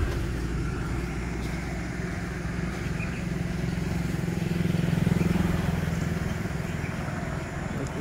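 A road vehicle's engine running close by, a steady low hum that grows louder about five seconds in as it passes and then eases off.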